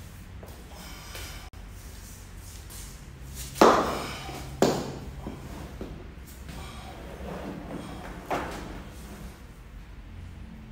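Heavy dumbbells and a body settling onto a padded weight bench: two loud thumps about a second apart, then a smaller one near the end as the lifter lies back with the weights.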